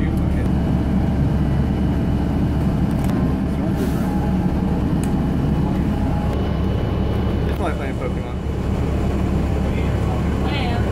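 Steady low rumble of a bus's engine and road noise, heard from inside the moving bus.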